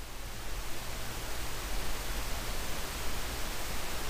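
Steady hiss with a low hum underneath: room tone and microphone noise, with no distinct sound events.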